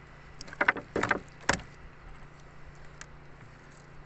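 Several quick knocks and thuds on a wooden boat's hull, bunched between about half a second and a second and a half in, as a fish is worked out of a gill net. A low steady hum runs underneath.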